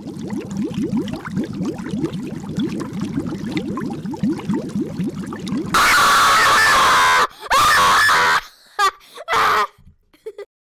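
A child's voice making a low, pulsing sound in quick rising strokes for the first few seconds. About six seconds in it gives way to loud, distorted screaming in four bursts.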